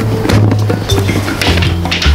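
Background music with a deep bass line that moves between held notes, over a beat.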